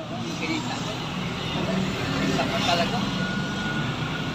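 Large truck's engine running on the road, a steady low rumble of traffic noise. Faint voices come through a little past two seconds in.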